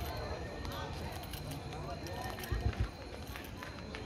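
Background chatter of people's voices in an open-air plaza, with a steady faint high tone and low rumble underneath. A few low thumps come about two and a half seconds in.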